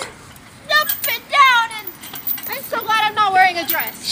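High-pitched voices making wordless squeals and calls in two stretches, about a second apart, with pitch sliding up and down.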